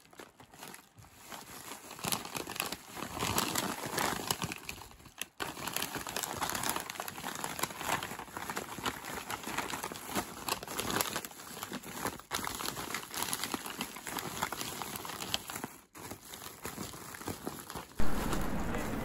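Brown paper mailing bag and the plastic air-cushion packing inside it crinkling and crackling as they are handled and opened, in irregular bursts with short pauses about five seconds in and near the end.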